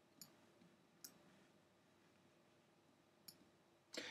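Near silence broken by three faint clicks of a computer mouse: two in the first second and one a little after three seconds in.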